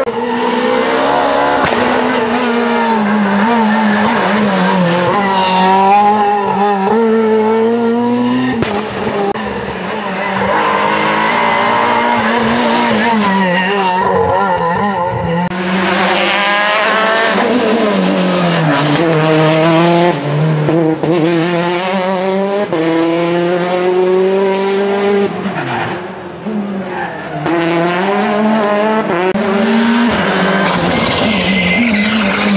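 Turbocharged four-cylinder R5 rally cars, a Peugeot 208 T16 and a Škoda Fabia R5, coming through at full stage pace, one after another. The engine notes climb and fall through gear changes, with brief lifts off the throttle.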